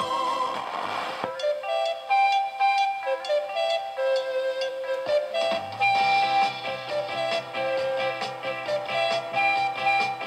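Music from an FM broadcast station playing through the loudspeaker of a homemade FM radio built around the Philips TDA7088T chip, tuned by hand with a varicap and multi-turn potentiometer. The sound changes abruptly about a second in and again about five seconds in.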